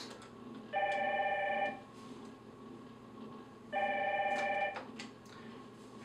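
Telephone call ringing tone: two rings of about one second each, three seconds apart, each a steady chord of several pitches. It is the sign of an outgoing SIP call from the emergency interphone ringing through to the video phone before it is answered.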